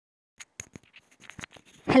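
A scattered run of faint short clicks and rustles, then a voice starts speaking right at the end.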